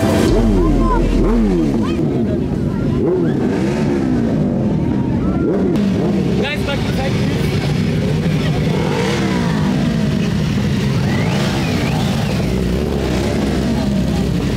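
Several motorcycle engines, mostly sportbikes, revving repeatedly, their pitch rising and falling in overlapping swoops.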